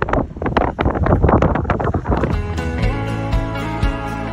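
Wind buffeting the microphone for about two seconds, then background music with a steady beat comes in.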